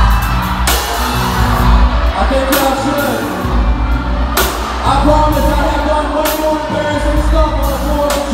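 Live band playing in a gymnasium: drum kit with a cymbal crash about every two seconds over bass and held chords, with singing.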